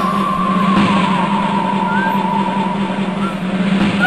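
Film background score: a wavering high tone that slides up and is held, sagging slightly, over a steady low drone.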